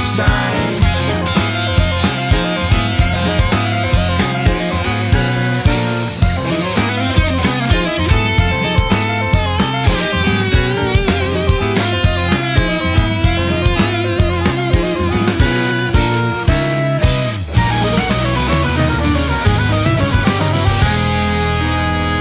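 Instrumental progressive rock: a drum kit keeps a steady beat under bass and electric guitar, with a wavering lead melody in the middle. The drums stop about four seconds before the end, leaving held chords.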